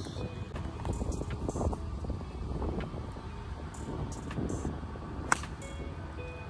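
A golf club striking a ball off the tee: one sharp crack about five seconds in, over a steady low rumble.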